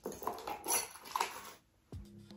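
A set of keys jingling and clinking as they are dropped into a leather handbag, in a few short bursts, then quiet.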